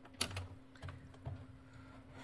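Faint, irregular clicks and soft knocks, several within two seconds, over a steady low hum.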